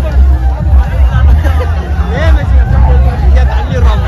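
Loud music with a heavy, continuous bass, with a crowd of many voices shouting and talking over it.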